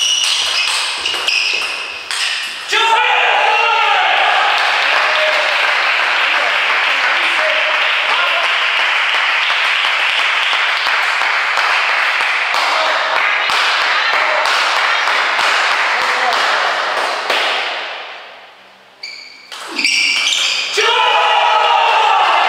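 Table tennis ball clicking off rackets and the table during rallies, under a steady din of voices. A player's loud shout comes near the end.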